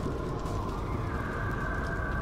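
A man gulping down a drink from an aluminium can, with the can tipped up.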